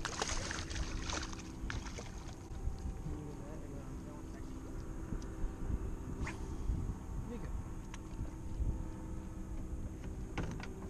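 Wind rumbling on the microphone, with brief splashes and sharp ticks as a hooked redfish thrashes at the surface beside the boat. The splashing is thickest in the first second or so.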